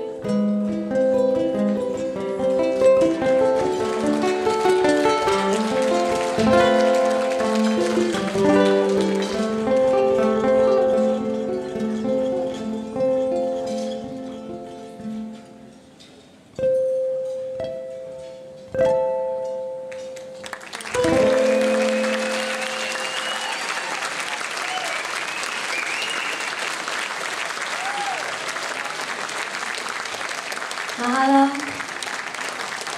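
Amplified ukulele played solo, a fast fingerpicked melody over bass notes that winds down into three ringing final chords about two seconds apart. After the last chord the audience applauds and cheers.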